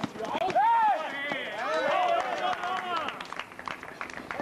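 Voices shouting and calling out over players running on an outdoor court, with scattered short knocks of footsteps. The calls are loudest in the first half and thin out near the end.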